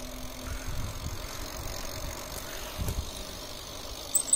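Wind rumbling on the microphone of a camera carried on a moving bicycle, a steady hiss with two stronger low gusts, one near the start and one about three seconds in.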